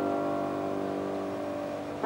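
Grand piano alone: a held chord ringing and slowly dying away, with a new loud chord struck right at the end.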